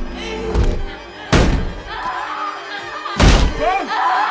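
Two heavy booming impacts in a horror film score, about two seconds apart, the first about a second in, over tense music. A woman's screaming starts up near the end.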